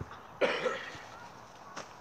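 A person's short, loud vocal burst, like a cough or exclamation, about half a second in, followed by a faint click near the end.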